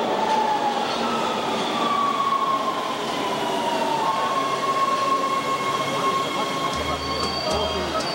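Subway train pulling into an underground station and slowing to a stop: a steady rumble of wheels on rail with a high whine that falls in pitch as it brakes, then holds steady.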